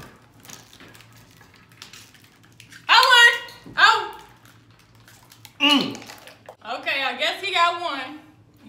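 Faint clicking and crackling of plastic water bottles and their screw caps being twisted open by hands with the thumbs taped down. From about three seconds in, loud voices cut in twice.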